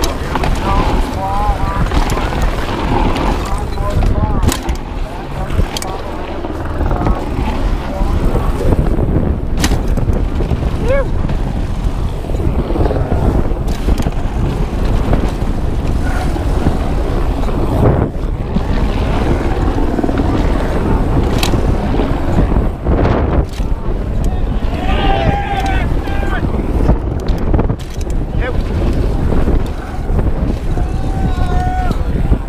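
Wind buffeting a helmet-mounted camera's microphone as a downhill mountain bike descends, over steady tyre noise on dirt and rock and frequent sharp knocks and rattles from the bike taking hits. Spectators shout briefly near the start and again about 25 seconds in.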